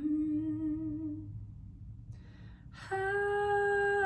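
A woman singing unaccompanied without words: a hummed note with closed lips fades out, a quick breath comes about two seconds in, then she opens into a long held, higher sung vowel near the end.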